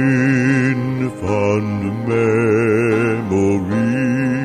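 Southern gospel male quartet singing long held chords in close harmony, the notes sung with vibrato and changing about once a second.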